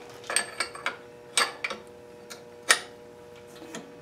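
Irregular light metallic clicks and taps from hands handling the drill press vise and workpiece, two of them louder than the rest, over a faint steady hum.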